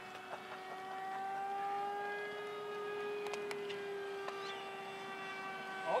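Radio-controlled model floatplane's motor in flight: a steady droning whine whose pitch rises slightly and eases back as it passes.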